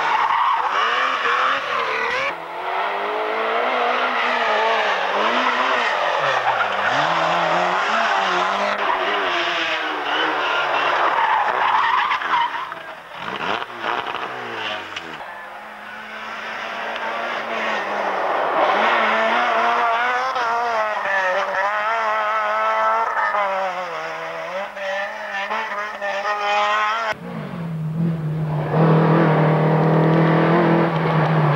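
Rally cars driven flat out on a twisty tarmac stage, one after another. Their engines rev up and drop back as the drivers change gear and brake into corners, with tyres squealing at times. The sound cuts abruptly from one car to the next a few times.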